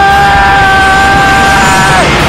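A young man's shout in Mandarin, the word 飞 ('fly') held as one long cry at a steady pitch that breaks off at the end, over backing music.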